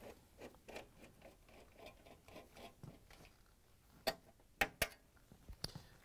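Quarter-inch nut driver backing out the screws of a dishwasher's metal access panel: faint light ticking and scraping, then three sharp metallic clicks about four to five seconds in.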